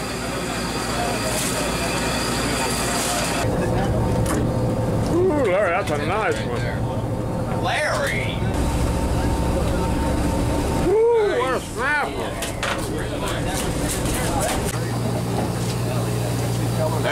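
Steady low drone of a fishing boat's machinery, with people's voices calling out over it several times without clear words.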